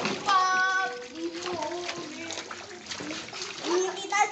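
Children's voices over water splashing and sloshing in a shallow paddling pool.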